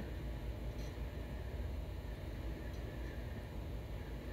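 Steady low background rumble of a building's ventilation system, with nothing distinct standing out above it.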